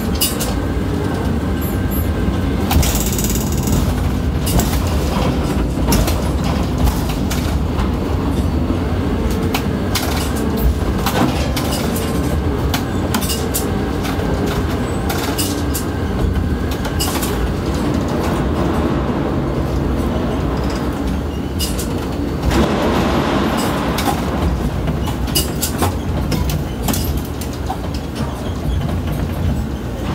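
Ship-to-shore container crane heard from inside the operator's cab as the trolley carries the spreader out over the ship and lowers it into a container cell: a steady low rumble with frequent rattling clicks, swelling briefly about two-thirds of the way in.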